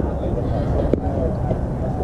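A softball bat strikes the ball once, a sharp crack about a second in, over scattered distant voices and a steady low rumble.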